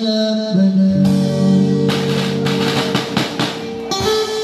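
Live street band: electric guitar and a voice through a portable speaker with an acoustic drum kit, a long note held through most of it. In the second half comes a run of drum and cymbal hits.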